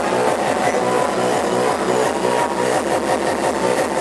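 Hard techno DJ set playing loud over a club sound system with a steady, fast, repeating beat, recorded on the dance floor with thin bass.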